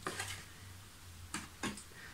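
A few faint, short clicks and soft rustles of postcards being handled on a desk in a small room.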